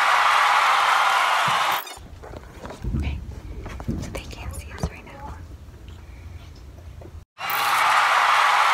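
An editing sound effect, a steady rush of noise lasting about two seconds, plays at the start and again near the end, laid under animated title captions. Between the two, faint whispering close to the microphone with a few low thumps.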